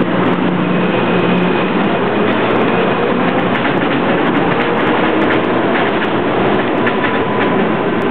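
Miami Metromover rubber-tyred people-mover car pulling out and running past close by along its elevated guideway: a steady, loud running noise. A low motor hum fades out about three seconds in as the car moves away.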